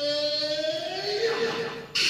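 A Bollywood film song playing from a vinyl LP through hi-fi loudspeakers in a small room: a long held note, a new higher note joining about a second in, and a sharp new attack right at the end.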